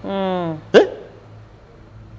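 A man's drawn-out hesitation sound, 'eh', then a short sharp catch in his voice, followed by a pause with only a faint low hum.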